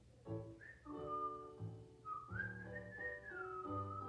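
A whistled tune over soft background music: a single clear pitch starts about a second in, rises in a slow glide and falls back near the end.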